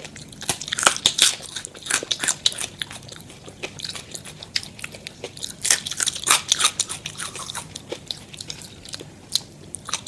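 Crisp french fries being bitten and chewed: rapid sharp crunches in clusters, with a few quieter gaps, played back at double speed.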